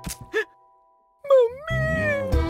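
After the music breaks off for a moment, a man lets out a long, exaggerated wailing cry, its pitch dipping, rising and then slowly falling, with backing music coming back in under it.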